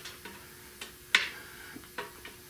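A wrench on the front crankshaft bolt of a seized Buick 455 V8 giving sharp metal clicks, one loud click a little over a second in and a couple of fainter ones, as the engine is worked a little each way and stops, over a faint steady hum.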